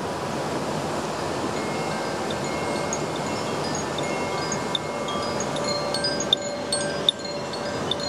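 A Koshi 'fire' (Ignis) bamboo chime swung by hand, its clapper striking the tuned rods inside. It gives a shimmer of sustained, overlapping bell-like tones with light tinkling strikes, and a couple of sharper strikes near the end.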